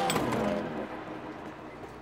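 Bus sound effect: engine running as the bus pulls away, fading steadily over two seconds.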